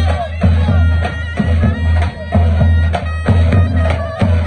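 Live davul and zurna folk dance music: a davul bass drum beats a rhythm under a zurna, a double-reed shawm, playing the melody.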